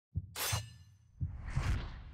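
Edited TV sound effects over a low thudding beat. A sharp crash with a high ringing tail, like breaking glass, comes about half a second in, and a rising whoosh follows near the end.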